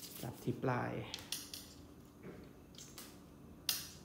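A small lure hanging from a jigging rod's guides clinking against the rod as the rod is waved and flexed: a handful of light, sharp clicks at uneven spacing, the loudest near the end.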